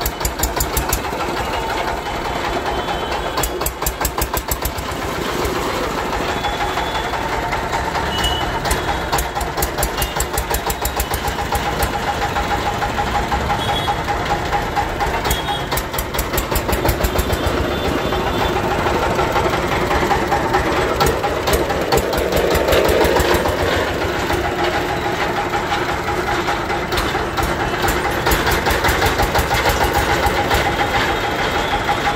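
Small stationary diesel engine running steadily with a rapid, even knock, driving a sugarcane juice crusher on a trial run.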